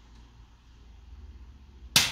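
A handheld Activator chiropractic adjusting instrument, set to its second force setting, fires once near the end with a single sharp, loud click as its tip thrusts into the mid-back to deliver a spinal adjustment.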